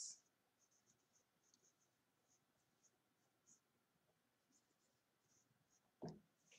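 Faint, short scratches of a felt-tip marker writing letters on a paper board, a stroke every fraction of a second with small gaps between.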